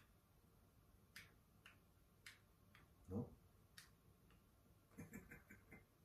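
Near silence broken by a handful of faint, scattered clicks from a handheld remote's buttons being pressed, with a brief low vocal sound about three seconds in and a short run of soft voiced sounds, like a chuckle, near the end.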